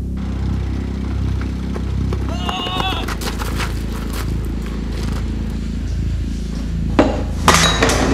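Trailer soundtrack with a steady low drone under scattered knocks and clicks. A short cry rises in pitch about two and a half seconds in, and a sharp hit comes about a second before the end.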